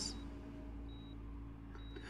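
Hospital patient heart monitor beeping softly, one short high beep a little under every second, over a low steady hum.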